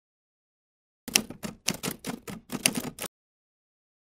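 Typing sound effect: a quick, irregular run of about a dozen sharp key clicks. It starts about a second in, lasts about two seconds and cuts off abruptly.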